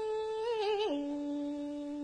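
A cải lương singer draws out a wordless vowel at the end of a sung line. One note wavers slightly, then steps down about halfway through to a lower note that is held steady.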